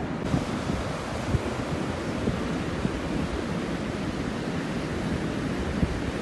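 Rough storm surf from a heavy sea swell washing steadily up the beach, with wind buffeting the microphone in a few brief low thumps.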